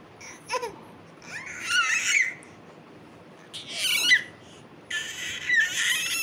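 An infant squealing and babbling in three high-pitched bursts, each a second or less long, with short pauses between.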